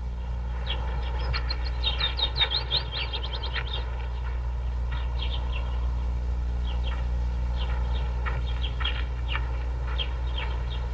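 Small birds chirping in short, high, falling notes: a quick run of chirps from about a second in, then scattered single chirps, over a steady low hum.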